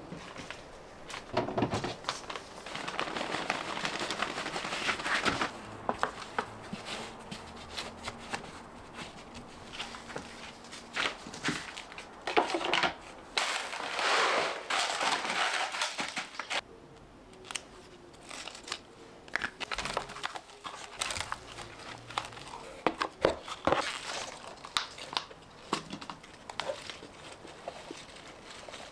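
Potting and planting handling noise: a plastic bag crinkling and coarse granules pouring and rattling into plastic planter boxes, with gloved hands rustling through potting soil and plants. It comes in irregular bursts with small clicks between, loudest about halfway through.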